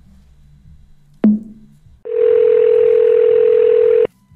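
A sharp click on the phone line as the call ends, then a steady telephone dial tone that starts about two seconds in and cuts off suddenly at the end.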